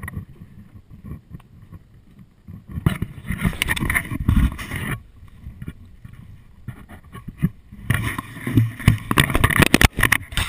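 Water splashing and sloshing against a stand-up paddleboard as it is paddled, in two louder stretches of about two seconds each, over a low steady rumble of moving water.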